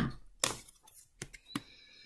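A tarot card being picked up off a table and turned over: a brief soft rustle about half a second in, then three or four light clicks.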